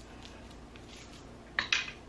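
Metal chain strap of a phone-case purse clinking as it is handled, a short jingle near the end.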